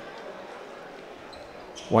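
Gymnasium crowd ambience during a basketball game: a low, steady murmur with a few faint knocks from the court. A man's voice starts right at the end.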